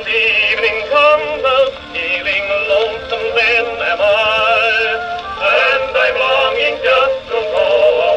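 Edison Amberola 30 phonograph playing a 1918 Blue Amberol cylinder record: an acoustic-era recording of music with strong vibrato, its sound thin and narrow-banded as it comes from the phonograph's horn.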